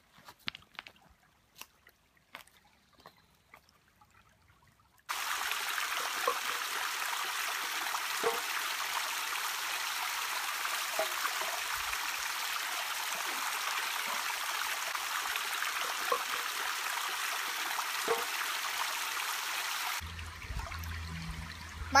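Small creek cascade splashing steadily over rocks and into a metal cup held under the flow. It starts suddenly about five seconds in, after a few seconds of near quiet with faint clicks, and drops away near the end.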